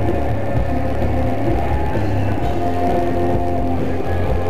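Live rock band playing loud electric guitars, bass and drums, with a heavy booming low end.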